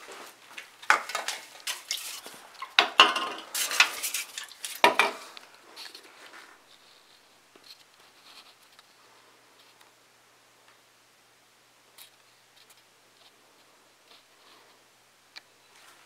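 Empty aluminium soda cans handled and set down on a desk: a run of clinks and knocks in the first five seconds or so, then a few faint ticks.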